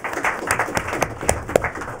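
Audience applauding: dense, irregular clapping that begins to fade near the end.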